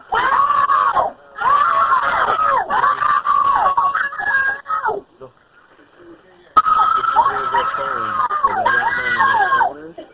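Several boys screaming and yelling for help together, heard over a 911 telephone line: two long bouts of high-pitched overlapping yells with a pause of about a second and a half between them.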